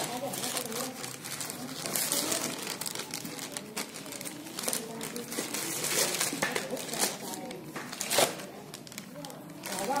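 Plastic courier mailer bag crinkling and rustling as it is handled and shaken, with one sharper crackle about two seconds before the end.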